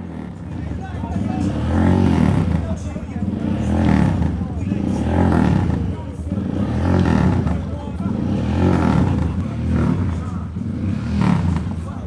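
A motorcycle engine revving over and over, each rev rising and falling about every one and a half to two seconds, with voices in the crowd.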